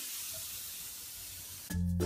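A Lush Granny Takes a Dip bath bomb fizzing in bath water: a steady, soft high hiss. Louder background music cuts in suddenly near the end.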